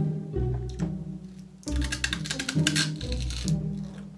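Background music with a low, steady bass line.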